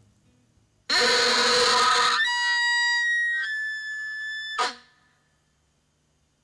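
Elk bugle call blown through a long bugle tube. About a second in comes a rough low growl, which rises into a high whistle held for over two seconds and dips slightly in pitch partway. It ends with a short downward grunt.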